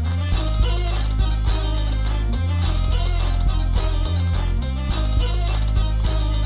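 Live band playing an instrumental passage: drum kit and a heavy bass line under a reedy melody, with a goatskin bagpipe (tsampouna) being played by the end.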